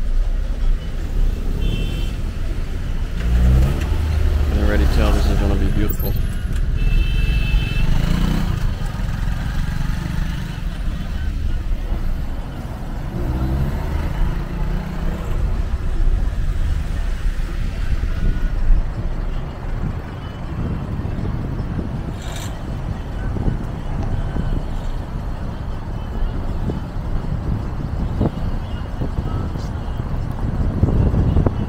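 Low, steady engine and road rumble of a taxi driving through city traffic, with a few short pitched sounds from the traffic around it.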